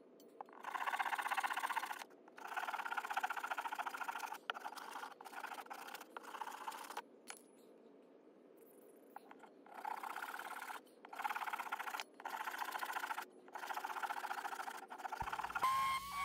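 Fine-toothed pull saw cutting through a hardwood table leg by hand: a run of rasping strokes, with a pause of a few seconds around the middle before the strokes resume.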